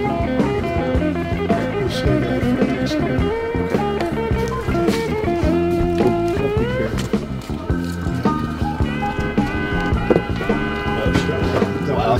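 Blues-rock band recording playing as background music, with electric guitar, Hammond organ and drums; a bent, gliding note stands out about two-thirds of the way through.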